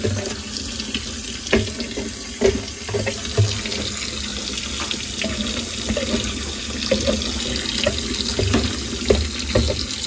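Hot water from a kitchen tap running steadily onto ice cubes in a stainless-steel sink, with a few short sharp knocks scattered through it.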